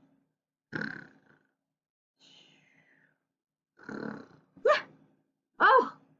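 A woman playfully faking snores: two raspy snores about three seconds apart, with a faint falling whistle between them, then short rising vocal sounds near the end.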